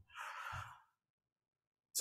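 A man breathing out once into a close microphone, a short soft sigh lasting about half a second, followed by silence.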